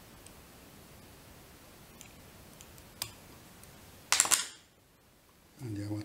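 Small clicks of hands and thread being worked at a fly-tying vise, then a brief, loud, sharp burst about four seconds in. A man's voice starts near the end.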